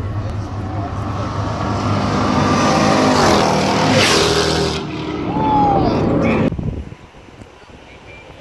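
A car accelerating hard down the road and past, its engine loud and climbing in pitch as it comes through. The sound cuts off abruptly after about six and a half seconds.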